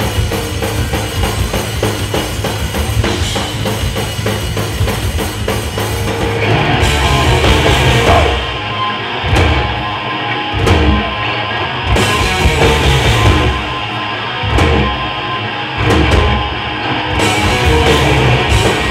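Live blackened speed metal band playing: distorted electric guitars, bass and a drum kit at full volume. Fast, driving drumming runs for the first six seconds or so, then the band switches to a stop-start riff of heavy accented hits with short breaks between them.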